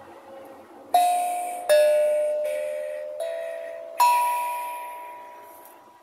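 Small steel tongue drum struck with a mallet: a handful of single notes at different pitches, each ringing on and fading slowly. The last note, about four seconds in, is the highest and rings out for about two seconds.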